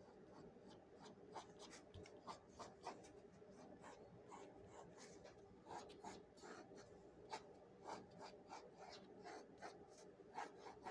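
Faint scratching of a pencil on paper: short, irregular sketching strokes, with a low steady hum beneath.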